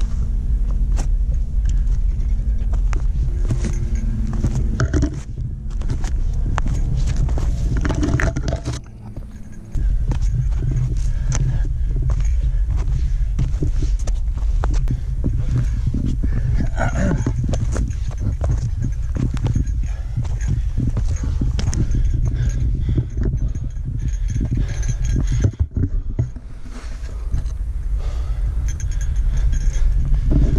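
Footsteps, scuffs and clinking gear of a hiker scrambling up a steep root-covered trail, heard close on a body-worn action camera, over a steady low rumble of wind and handling noise.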